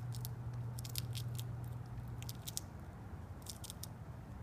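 A fox squirrel gnawing and crunching food held in its paws: short bursts of crisp crunching clicks about once a second. Under it is a steady low hum that stops a little past halfway.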